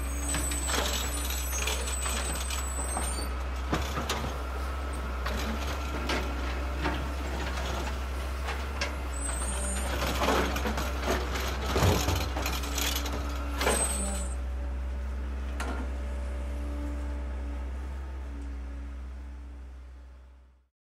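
Heavy machinery at a demolition site: a diesel truck and excavator running with a steady low rumble, scattered knocks and clatter of rubble, and short high hissing squeals a few times. The sound fades out near the end.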